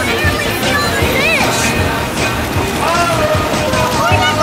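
Background pop song with a sung melody over a full band accompaniment.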